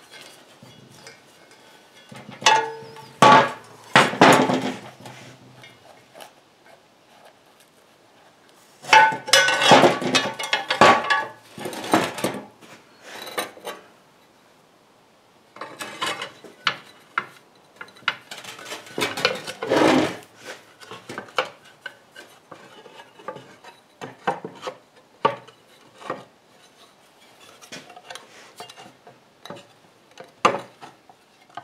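Steel pulley sheave and red steel pulley head of a wrecker boom being handled and fitted together: metal parts clinking and knocking against each other in bursts, a cluster a few seconds in, a longer run of knocks around ten seconds in and another around twenty seconds, with lighter scattered taps between.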